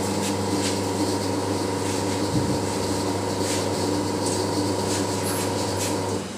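The pump motor of a soda bottling machine runs with a steady electric hum. The automatic cutout switches it off at the very end.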